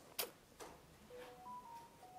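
A sharp click, then a weaker one, followed by a faint run of short beeps that step up in pitch and back down.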